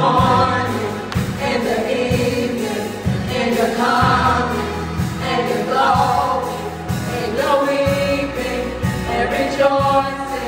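A small gospel vocal group of mixed voices singing together into microphones, over instrumental accompaniment with a steady beat.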